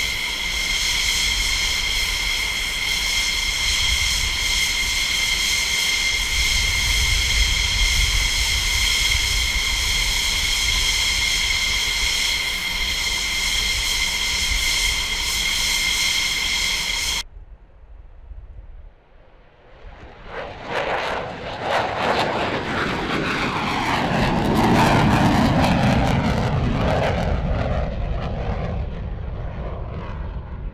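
F-16 fighter jet's turbofan engine whining steadily with several fixed high tones while the jet taxis. A little over halfway through the sound cuts off suddenly; after a short lull a loud jet roar builds as the F-16 takes off and climbs past, loudest about five seconds after it starts.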